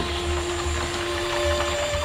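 Soft background music of held notes over a low throbbing rumble, a second higher note entering about a second in.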